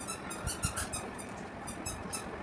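Thread and fibre windings of a cricket ball's core being torn and pulled apart by hand: a quick run of short, high-pitched scratchy crackles as the strands rip loose.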